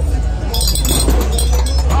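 Plastic rings from a ring-toss game landing among tightly packed glass bottles, clinking and rattling against the glass in a quick cluster of sharp clinks that begins about half a second in and lasts about a second. A steady low hum continues underneath.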